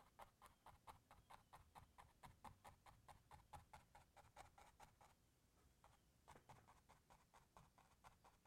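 Faint, rhythmic scratching of a paintbrush worked back and forth against canvas, about four strokes a second. The strokes pause for about a second past the middle, then resume.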